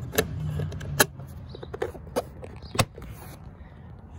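The plastic lens and housing of a Mazda 6 door courtesy light being handled and pressed back into the door trim, giving a series of sharp plastic clicks and snaps. The loudest snap comes about a second in.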